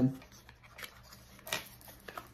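A small cardboard product box being opened by hand: faint scuffs of the card, and one brief, sharper scrape of the flap about a second and a half in.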